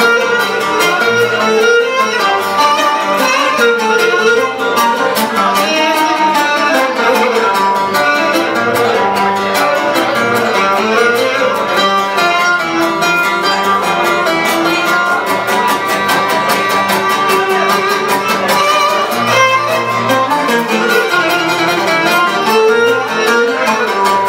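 Cretan lyra playing an instrumental melody over a steadily strummed laouto.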